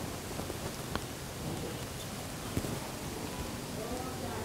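Steady hiss with a faint click about a second in and a brief soft knock a little past halfway, as a hand-held chakli press is worked to squeeze dough out onto butter paper.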